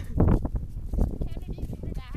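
Horse walking on a soft, muddy dirt track: dull hoofbeats over a low rumble.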